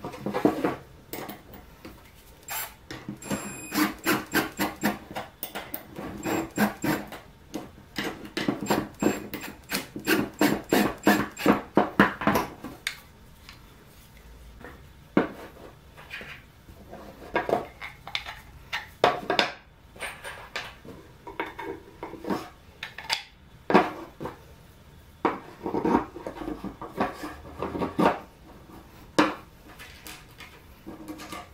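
Wooden parts and loose steel bolts, nuts and washers handled on a workbench: a run of quick clicks and knocks for several seconds, then scattered taps and small metallic clinks.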